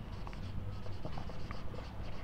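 Marker pen writing on a whiteboard: faint, with small irregular ticks as the strokes are made.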